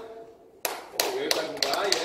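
A run of sharp taps starting about half a second in, sparse at first and then coming quickly several times near the end, with a voice talking low underneath.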